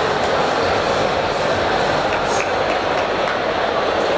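Steady crowd noise from spectators at a boxing match, a continuous hubbub of many voices without a clear single speaker.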